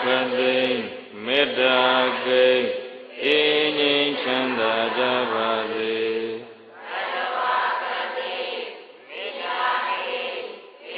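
A man's voice chanting Buddhist verses in Pali, holding long notes with slides between them. After a short break near the seven-second mark, several voices chant together, blending into a thicker, less distinct sound.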